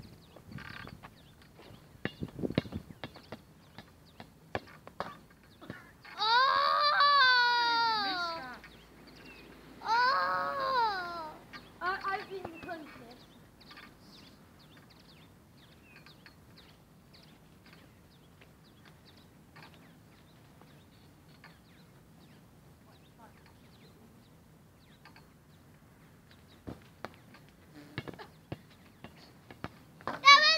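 A child's voice giving two long, high-pitched, drawn-out yells with wavering pitch, about six and ten seconds in, then a shorter one. Between them come only faint scattered knocks.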